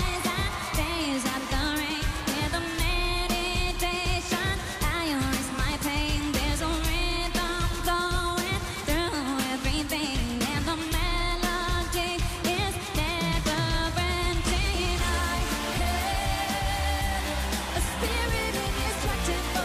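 Live pop song: a woman sings lead into a microphone over a full band, with a drum kit keeping a steady beat.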